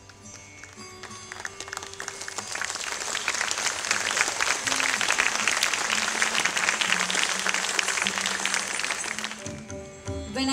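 Audience applauding: the clapping builds up over the first few seconds, holds, and dies away near the end. Faint held notes of the accompanying music linger underneath.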